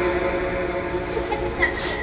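SCD-1 software ghost box output played through the Portal: a steady drone of layered tones over static, with no clear words. A short rising blip and a burst of hiss come near the end.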